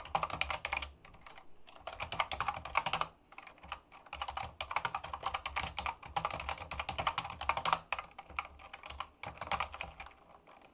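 Computer keyboard being typed on: runs of rapid keystrokes with a couple of brief pauses.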